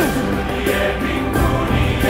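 Christian music with a choir singing held notes.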